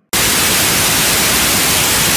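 Loud, steady television static hiss that cuts in abruptly just after a brief silence: the sound of a dead broadcast feed, marking the live signal dropping out.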